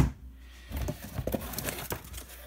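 A single heavy thump as a large transformer is set down on the bench, followed by irregular rustling, crinkling and small knocks of crumpled brown kraft-paper packing as a hand rummages in a cardboard box.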